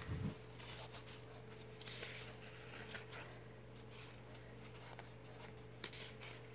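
Soft rustling and sliding of a coloring book's paper sheet as it is handled and turned, with a low thump right at the start and a few faint clicks.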